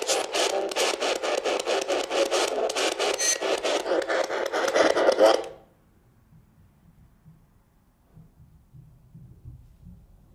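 A spirit box sweeping through radio stations, giving a loud, evenly chopped hiss of static about four to five bursts a second. It cuts off suddenly about five and a half seconds in, leaving near silence with a few faint low bumps.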